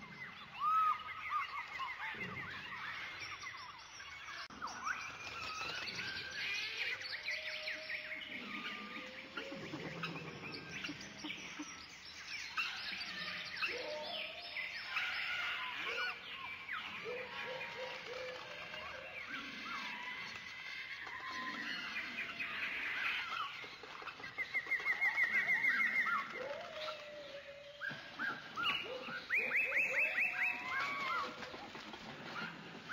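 Many overlapping bird chirps and calls, with a fast trill for about two seconds near the end.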